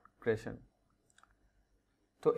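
A man's voice trails off in a short syllable, then near silence with a few faint clicks a little past a second in.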